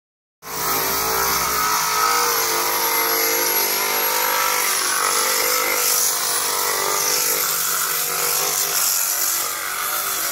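Handheld electric sander running steadily as it grinds down peeling pool plaster, a steady motor hum with a thin high whine above it.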